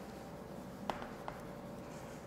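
Chalk writing on a chalkboard: faint scratching strokes, with two light, sharp taps of the chalk about a second in.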